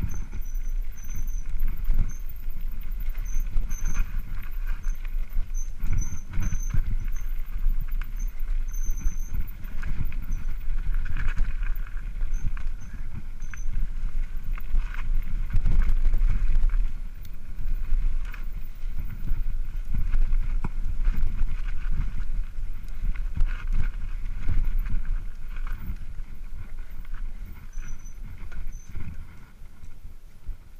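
Mountain bike descending a bumpy dirt trail at speed: tyres rumbling over the ground, the frame and components rattling with frequent knocks, and a steady low rumble on the microphone. It quietens near the end as the bike slows.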